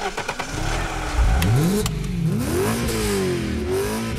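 Car engine revving as a sound effect under an animated title sequence, its pitch sweeping up and down several times, with a couple of sharp clicks partway through.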